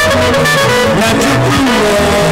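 Band music with electric guitars over a bass line and a steady beat.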